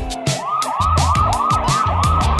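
Police siren sound effect in quick rising yelps, about four a second, starting about half a second in, over the drums and bass of a children's song's backing music.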